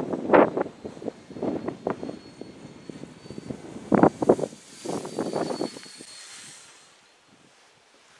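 Gusty wind buffeting the microphone in irregular bursts, over the faint high whine of a model gyrocopter's electric brushless motor and propeller in flight. The whine swells a little just past the middle, then everything fades near the end.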